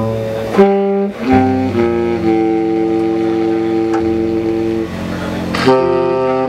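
Live free jazz: a saxophone and a double bass hold long, low, overtone-rich notes that shift pitch every second or so, with sharper attacks about half a second in and again near the end.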